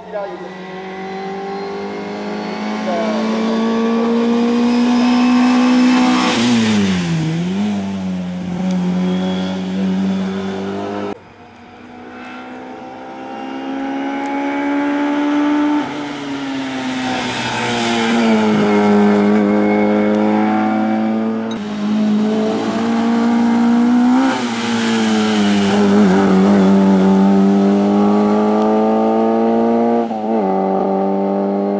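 Group A hillclimb race car's engine revving hard as it climbs the course, its pitch rising under acceleration and dropping at gear changes and as the car passes by. The sound breaks off abruptly a few times between shots.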